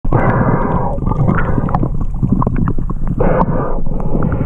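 Muffled underwater sound from a submerged camera: a steady rush of moving water, with louder stretches of hiss, one about a second long near the start and a shorter one near the end, and many small clicks and taps throughout.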